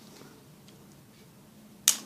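One sharp plastic click near the end from the latch of a small spring-loaded plastic toy figure: the catch that cocks it and releases it to spin. Otherwise only faint room tone.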